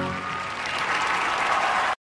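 Audience applause swelling as the music fades out, then cut off abruptly just before the end.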